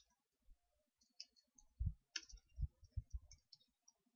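Faint, irregular clicking of computer keyboard keys and mouse buttons, with a few soft low thumps in among the clicks.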